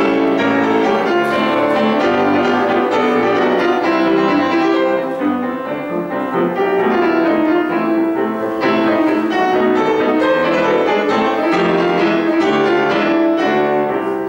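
Seiler grand piano playing the solo introduction to the song, with a slightly softer passage about midway.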